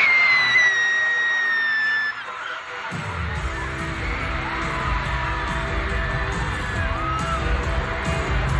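Phone recording of an arena crowd screaming, with one long high-pitched scream sliding slowly down. About two seconds in it cuts to a live band playing with heavy bass under continued crowd noise and singing.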